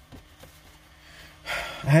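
A quiet pause with faint steady hum, then near the end a short breathy rush of air as a man draws breath and starts to speak.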